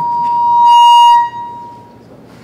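Microphone feedback through a lecture-hall sound system: one high, steady whistle that swells to a loud peak about a second in, then cuts off suddenly and fades away.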